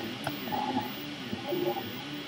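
Prusa i3 MK2 3D printer's stepper motors whining mid-print. Several tones rise and fall in pitch again and again as the print head and bed speed up, slow down and change direction.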